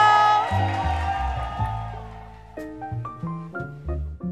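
Slow R&B music: a long held note fades out over a bass line, then a few short separate notes and bass notes follow, the music thinning out near the end.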